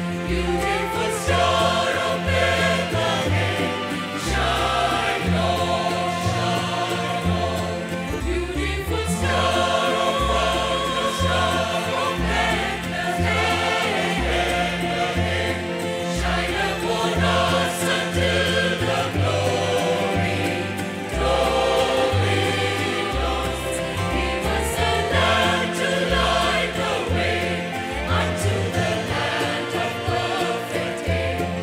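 Mixed church choir singing a Christmas carol in harmony, accompanied by a keyboard playing sustained bass notes that change every second or so.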